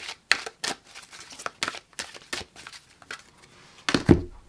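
A deck of oracle cards shuffled by hand: a run of quick, irregular card snaps and flicks, with a louder thump near the end as cards are put down on the table.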